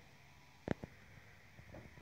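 Quiet room tone with a single sharp click a little before halfway, followed closely by a fainter one.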